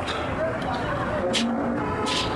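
Steady background rumble with faint voices talking in the background, and one short hiss about one and a half seconds in.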